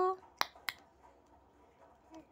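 Two short, sharp clicks about a third of a second apart, just after the end of a woman's long drawn-out word; quiet room noise otherwise.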